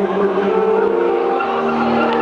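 Live beatbox-and-band music: held, slightly wavering pitched vocal sounds into a microphone over the band's accompaniment.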